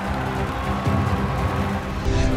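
Background music with sustained chords over a heavy low end.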